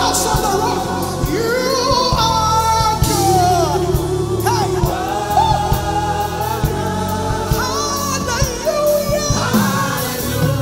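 Gospel worship music: sung voices over a band with a steady drum beat and bass.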